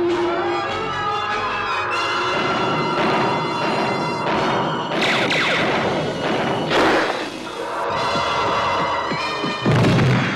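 Dramatic 1980s cartoon action score with crash sound effects: bursts of crashing noise about halfway through and a heavy thud near the end.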